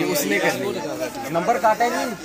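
Men talking, with overlapping voices in conversation.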